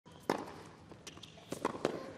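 Tennis rally on a hard court: a loud, sharp racket strike on the ball about a third of a second in, faint taps and footsteps, then a quick run of sharp knocks near the end as the ball bounces and is struck back.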